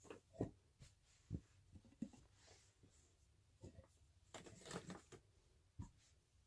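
Faint, scattered soft knocks and rustles of glass candle jars being handled and moved about on a fleece blanket, against near silence.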